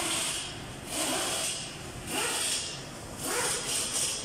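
Close rustling and rubbing noise that swells and fades about once a second.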